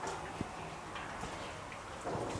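Brown bear cub's claws on the enclosure's metal wire mesh as it climbs: faint scattered clicks, with one sharper click just under half a second in.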